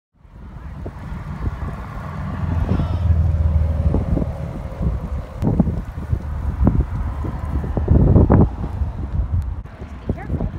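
Wind buffeting a phone's microphone while riding a bicycle: a heavy, uneven low rumble that swells and drops with the gusts.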